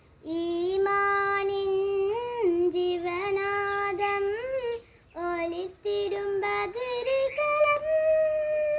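A young girl singing a qaseeda solo and unaccompanied, with long held notes and ornamental slides between pitches, broken by a couple of brief pauses.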